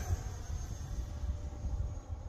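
Low, uneven wind noise on the microphone, with the faint steady whine of the E-flite F-15 Eagle's electric ducted fan flying high overhead.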